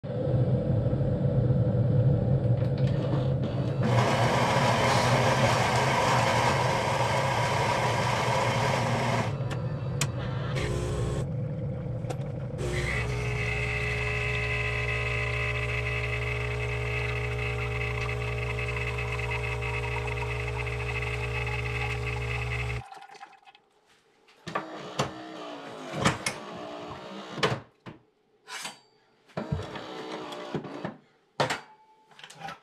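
Super-automatic espresso machine making a coffee: its motor runs with a louder rough grinding stretch for several seconds, a few clicks follow, then its pump hums steadily for about ten seconds and cuts off suddenly. After that come a few short clinks and knocks of cups being handled at the machine.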